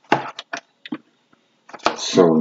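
Handling noise: a few short knocks and rustles of something being moved by hand close to the microphone. The first, just after the start, is the loudest. A sharp click comes near the end.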